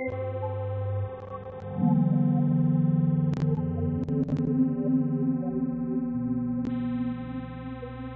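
Electronic music from the Fragment additive (spectral) synthesizer, sequenced in Renoise: sustained tones built from many evenly spaced steady partials over a bass line that changes note a few times. It gets louder about two seconds in, with a few brief clicks in the middle.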